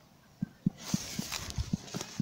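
A horse eating grass at close range: a quick run of short, muffled low crunches, about four a second. A burst of rustling grass comes in the middle.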